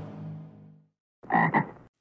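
A cartoon frog's croak sound effect: two quick, short croaks about a second and a quarter in, after the last chord of a music cue fades out.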